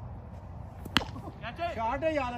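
A single sharp crack about a second in, a cricket bat striking a taped tennis ball, followed by players shouting.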